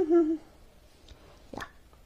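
A woman's short, hooting laugh trailing off in the first half-second, then quiet room tone with one brief rustle of paper or fabric about a second and a half in.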